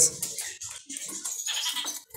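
Faint, scattered chirps from caged songbirds, quieter than the talk around them.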